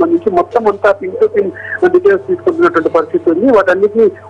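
Speech only: one voice talking continuously, in the manner of a news report.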